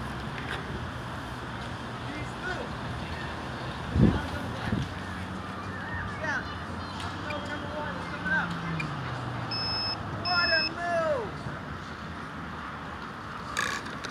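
Two short electronic beeps, close together, from a quadcopter's radio link or flight controller during an attempt to arm it; the motors are not spinning. A single thump about four seconds in, over steady outdoor background noise.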